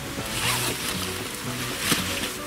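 Zipper on a fabric carrying pouch being pulled open, two rasping pulls, one about half a second in and one near the end, over background music.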